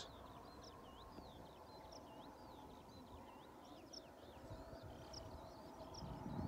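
Faint birdsong: a continuous run of short, high twittering notes from a small songbird, over quiet low background noise.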